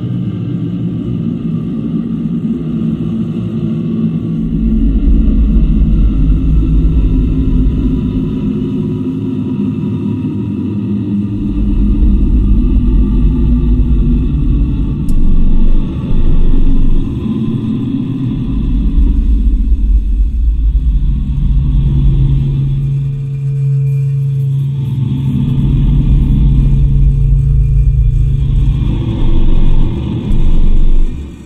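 Live improvised electronic drone music: dense low sustained tones under heavy sub-bass swells that rise and fall away every few seconds. About two-thirds of the way in, a steady deep hum and a fainter higher held tone come in.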